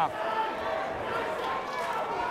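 Crowd noise in a boxing arena: a steady din of many voices, with faint scattered shouts.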